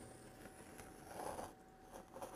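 Faint scraping of a knife blade drawn through a soft clay slab, cutting a circle around the edge of a round form.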